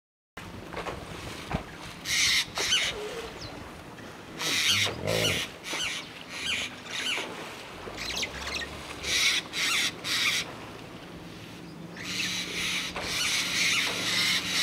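A crowded pod of hippos in a river: repeated short splashes and sprays of water come in clusters, with a low grunt about five seconds in.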